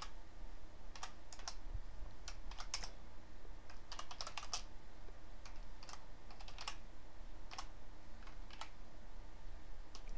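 Computer keyboard keystrokes: irregular typing, single clicks and quick runs of several keys with short pauses between.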